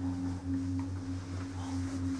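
Detachable chairlift in motion on the line: a steady low hum with a higher tone above it, pulsing faintly about three times a second.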